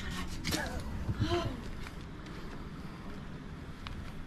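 A person's brief, faint voice sounds in the first second and a half, then a steady low rumble with a couple of faint clicks near the end.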